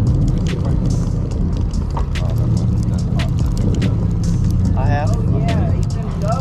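A fishing boat's engine running with a steady low rumble, with sharp clicks scattered through and voices about five seconds in.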